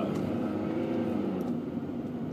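Steady engine and road noise heard inside the cabin of a 2000 Honda Accord as it drives.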